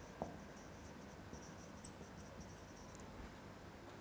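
Faint scratching of a marker pen writing words on a whiteboard, in short strokes mostly between about one and three seconds in, with a couple of light taps.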